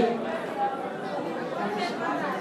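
Low background chatter of several people's voices in the pause between phrases of the amplified reading.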